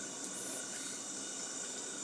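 Faint, steady background hiss with no distinct sound event: room tone between spoken lines.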